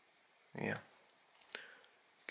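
A quiet man's 'yeah', then two short, faint clicks about a tenth of a second apart, over faint room tone.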